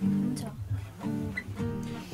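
Acoustic guitar strummed: a chord struck right at the start, then further chords about every half second, ringing on.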